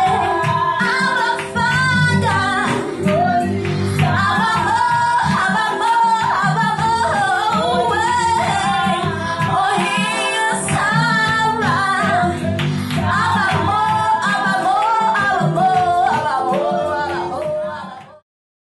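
A woman singing a praise song into a microphone, with electronic keyboard accompaniment. The music fades out near the end.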